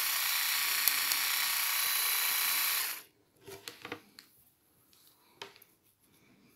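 Vitek VT-2216 electric manicure handpiece motor whirring steadily at its lowest speed setting, then stopping suddenly about three seconds in. A few faint clicks follow.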